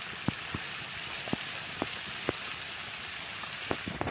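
Trout frying in butter in a pan over a wood campfire: a steady sizzle with scattered sharp pops and crackles.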